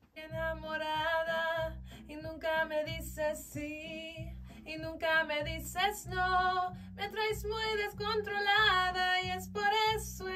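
A woman's solo vocal take of a Spanish-language song, sung into a studio microphone in held notes over an accompaniment track with a steady low beat.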